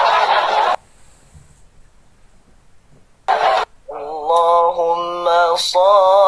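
A long breathy hiss, like forceful blowing or exhaling, that stops about a second in, and a short burst of the same a few seconds later. Then a man's voice starts chanting in long, slightly wavering held notes.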